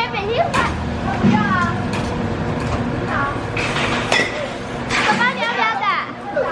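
Children's voices chattering throughout, with a few sharp cracks of a baseball bat hitting pitched balls, the loudest about four seconds in.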